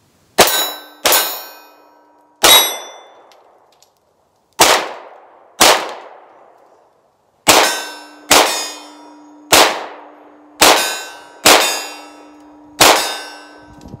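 SAR B6C 9mm compact pistol firing about a dozen shots at an uneven pace, each shot followed by the ring of a steel target being hit, the ring sometimes still sounding as the next shot goes off.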